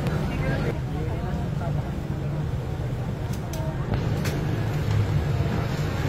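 Busy outdoor street-market ambience: a steady low hum under scattered voices of people nearby, with a few sharp clicks between about three and four and a half seconds in.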